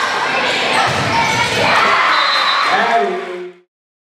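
Indoor volleyball rally: the ball struck with sharp hits amid shouting and cheering from the players and crowd, cutting off suddenly near the end.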